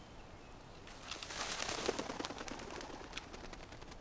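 A dove's wings flapping rapidly as it flies off, a fluttering that starts about a second in and fades over the next two seconds.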